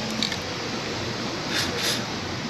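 Two short hisses from an aerosol lubricant can sprayed through a straw onto a car door hinge, near the end, over a steady background hiss.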